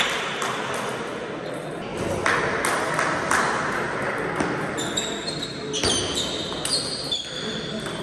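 Table tennis rally: a plastic ball clicking sharply off paddles and the table several times, over a background of voices in the hall. Brief high squeaks come a few times between about five and seven seconds in.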